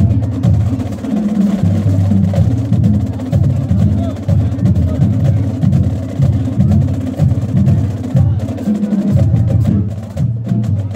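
High school marching band playing in the stands, with its drums and percussion prominent in a steady, driving rhythm.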